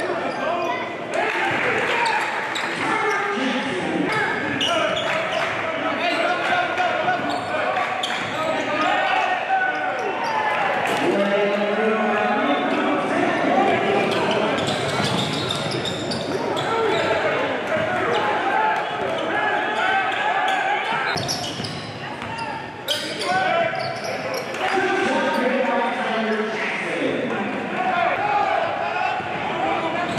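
Live basketball game sound in a large gym: a basketball bouncing on the hardwood court under a steady hubbub of indistinct voices that echoes in the hall, with a sharp knock about three quarters of the way through.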